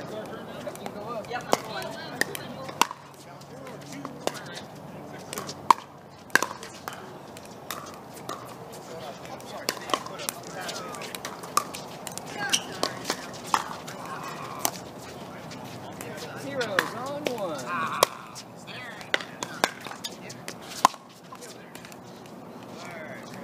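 Pickleball rallies: paddles striking the plastic ball in sharp, hollow pops at irregular intervals, sometimes two or three in quick succession, with voices chattering in the background.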